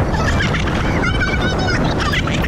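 Several riders on a towed banana boat shrieking and yelling in short high-pitched cries, most of them about a second in, over heavy wind rushing on the microphone and spray from the speeding ride.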